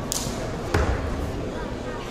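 A quick swish of a martial artist's loose uniform, then about three-quarters of a second in a single heavy thud of a foot stamping on the foam mat.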